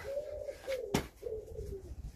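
A pigeon cooing in a run of low, steady coos, with one sharp click about halfway through.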